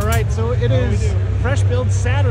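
Voices talking over a steady low rumble of a large, busy hall.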